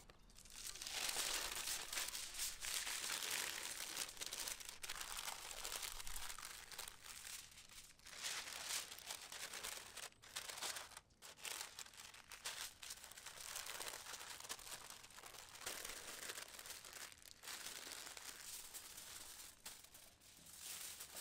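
Parchment paper and aluminium foil crinkling and rustling as they are folded and crimped by hand around a parcel of meat, in irregular stretches with a few short pauses.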